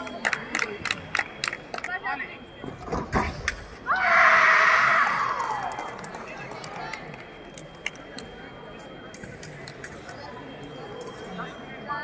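Sabre fencing exchange: a rapid run of sharp metallic clicks from blade contact and foot stamps on the piste. About four seconds in comes a loud shout, held for about two seconds and falling away: a fencer's cry as the deciding 15th touch lands.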